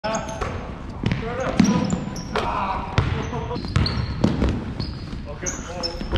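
A basketball bouncing on a hardwood gym floor, several uneven knocks, mixed with short high squeaks from sneakers during a pickup game.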